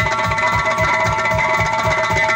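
Several doira frame drums played together in a fast, even beat, about five strokes a second, with held melodic notes from the band over them.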